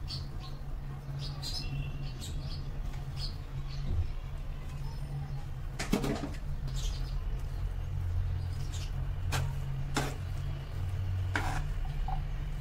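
Quiet kitchen background: a steady low hum with faint short chirps and a few light clicks while coriander is scattered over the pasta in the pan.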